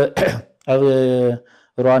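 Speech only: a man talking in Tigrinya.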